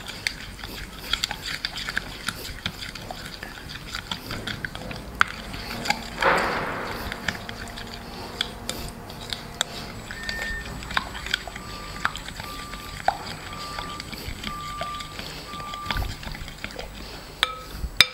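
Plastic spoon stirring a thick yogurt-and-spice marinade in a glass bowl: repeated light clicks and scrapes against the glass, with one louder rushing sound about six seconds in.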